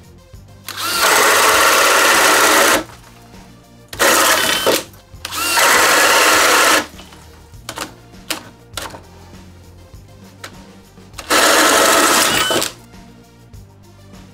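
DeWalt DCD999 cordless hammer drill boring a 2 9/16-inch switchblade bit into wood under heavy load, in four loud runs of one to two seconds each. Background music plays underneath.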